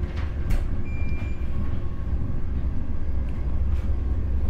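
Eurostar high-speed train running at speed, a steady low rumble heard from inside the carriage.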